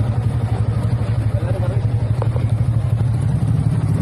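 An engine running steadily close by: a constant low drone with a fast, even pulse that does not rise or fall.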